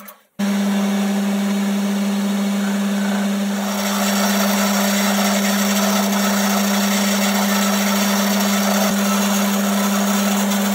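Boxford lathe running with a steady hum while a twist drill held in the tailstock drill chuck bores into the spinning workpiece; the cutting noise grows louder about four seconds in. It starts after a brief break at the very beginning.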